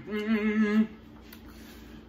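A man's closed-mouth 'mmm' of enjoyment while tasting food, one held hum under a second long with a wobbling pitch.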